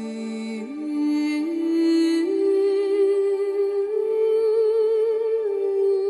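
Slow, sustained music: long held notes with vibrato that step upward in pitch every second or so, then hold the top note.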